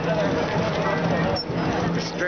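Chatter of several people talking among a crowd of riders, over a steady low hum.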